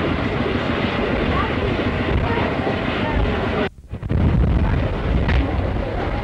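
Outdoor crowd ambience: indistinct voices with wind buffeting the microphone. It drops out briefly just under four seconds in, then resumes.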